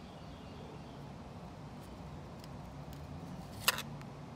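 Faint handling of a fish on a plastic cutting board over a steady low background hum. One sharp click comes near the end.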